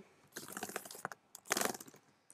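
Typing on a computer keyboard: a quick run of soft keystrokes, then a second short burst about a second and a half in.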